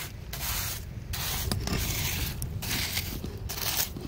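Sand being scraped and pushed over a wood fire around the cooking pots, in several rough strokes with short gaps between them. The fire is being partly smothered so the rice can finish steaming.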